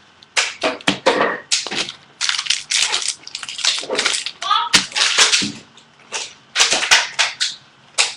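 Baseball trading cards being flicked and slid against one another while being sorted by hand: a run of short, sharp snaps and rustles at irregular intervals.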